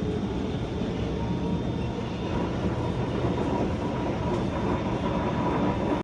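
Singapore MRT train running, heard from inside the carriage: a steady rumble of wheels and running gear, joined about a second in by a steady high hum.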